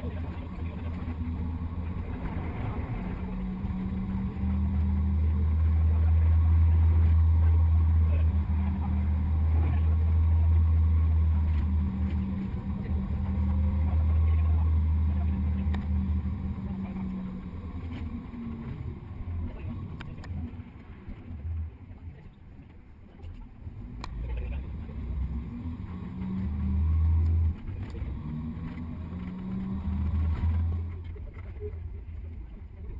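Low, steady rumble of a double-decker tour bus driving along a road. It swells louder for several seconds early on and eases off to its quietest a little past two-thirds of the way through.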